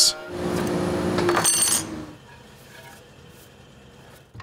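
Router table running a large bearing-guided flush-trim bit, trimming a thick walnut leg to its template, with a steady whine over the cutting noise. After about two seconds it cuts off to a quiet room.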